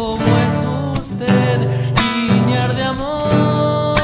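Nylon-string classical guitar plucking a Cuyo tonada accompaniment, with a male voice holding a long sung note with vibrato from about three seconds in.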